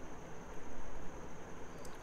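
Quiet room tone: a faint steady hiss with a thin, steady high-pitched whine and a low hum underneath.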